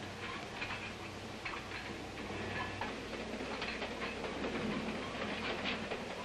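Steady running noise of a moving train, heard from inside a railway mail car.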